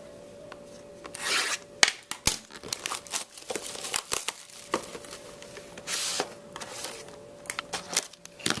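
Plastic shrink wrap tearing and crinkling as it is stripped off a cardboard trading-card box, with rubbing and small knocks from the box being handled. Two longer rustling swishes stand out, about a second in and about six seconds in.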